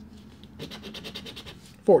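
A scratch-off lottery ticket being scraped: a quick run of short back-and-forth scratching strokes rubbing the coating off a winning-number spot.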